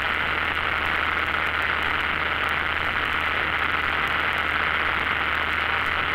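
Steady noise of a single-engine propeller plane's engine and propeller in flight, heard as a constant hiss over a low hum through the aircraft's audio feed, between radio calls.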